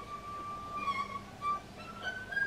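Erhu playing a soft, high held note, bowed, with a brief dip in pitch about a second in and a rise to a higher note near the end.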